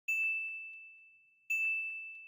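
Two bright bell-like dings about a second and a half apart, each a single clear tone that rings on and fades away over about a second: a title-card sound effect.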